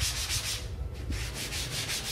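Damp dish sponge scrubbed back and forth over the glue-coated surface of a screen-printing pallet in quick, even rubbing strokes, with a short pause about halfway through. The sponge is lifting fabric lint off the pallet adhesive with water only.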